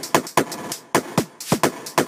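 Soloed trance production layer: a chopped-up, heavily effected vocal sample, its volume pumped by an LFO Tool envelope, playing as quick stuttering hits, about four a second, each with a sharp attack that drops in pitch.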